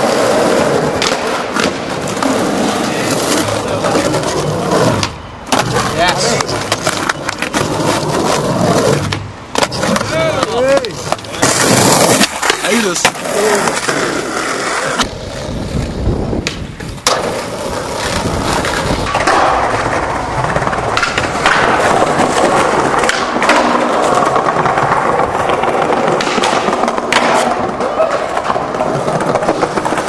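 Skateboard wheels rolling on rough pavement and concrete, with the clack and slap of boards popping and landing. Several short clips are joined with abrupt cuts.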